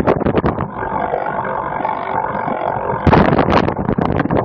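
Cyclocross bike rattling and jolting over rough grass. The rattle gives way about a second in to a steady droning buzz of unclear source, which cuts off suddenly near the end when the jolting returns.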